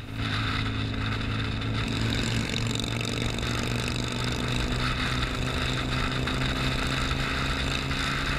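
BMW R nineT's boxer twin engine running steadily at highway cruising speed, its note holding an even pitch, with wind rushing over the helmet-mounted microphone.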